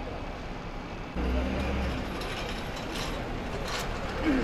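Engine of a double-decker bus pulling away and approaching, its low drone rising abruptly about a second in, with short clicking and hissing sounds in the second half.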